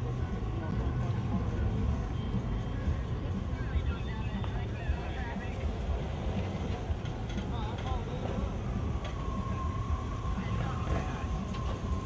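Low, steady rumble of lowrider cars driving slowly past, with indistinct voices in the background.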